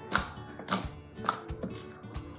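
Background music, with about four sharp pops and clicks in two seconds from a lump of slime being squeezed and kneaded by hand.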